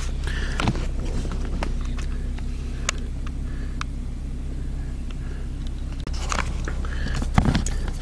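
Pickup truck running, a steady low hum heard inside the cab at floor level, with a few light clicks and handling rustles.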